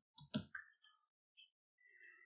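Three quick clicks from a computer keyboard and mouse within the first half second.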